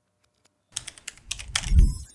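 Typing on a computer keyboard: a quick run of key clicks starting under a second in. A low rumble swells under them and is loudest just before the end.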